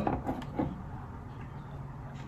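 Quiet room tone with a few faint clicks in the first half-second.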